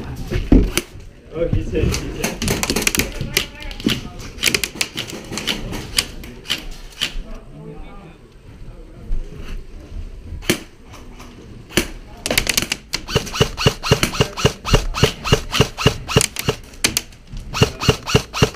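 Airsoft guns firing: scattered sharp shots early on, then a fast, even string of shots, about four or five a second, over the last several seconds.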